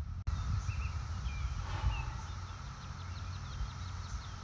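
Outdoor ambience: small birds chirping faintly in short calls, several in a row near the end, over a steady low rumble of wind.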